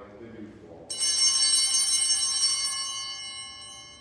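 Altar bells rung once, coming in suddenly about a second in with a bright, high ring that slowly dies away. They mark the epiclesis, as the priest extends his hands over the gifts.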